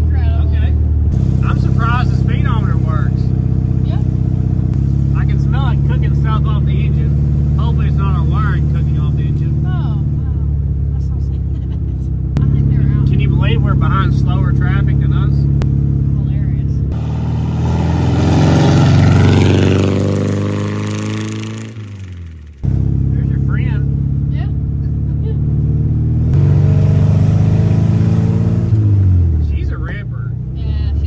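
A 1971 VW Beetle's air-cooled flat-four engine running while driving, heard from inside the cabin. Its note steps up and down in pitch a few times, then falls away steadily in the middle and again near the end.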